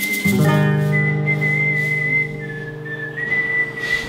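An acoustic guitar chord struck once about a quarter-second in and left ringing until it fades around halfway, under a high whistled note held nearly throughout that dips slightly in pitch a little past the middle and then comes back up.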